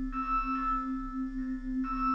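Ambient electronic music played live on a Eurorack modular synthesizer: a steady low drone with a gentle wobble, under soft bell-like chords that enter just after the start and again near the end.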